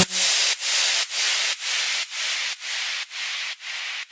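Outro of an electronic house track: the kick and bass have dropped out, leaving only a hissing synth-noise layer. It pulses about twice a second in time with the beat and fades out.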